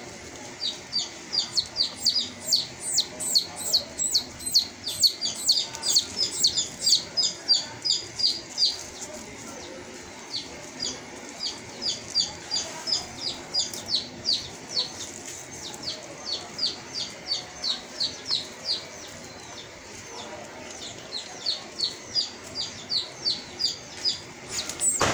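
A bird chirping over and over: short, high notes at about four a second, in two long runs with a break of about a second and a half after the first nine seconds.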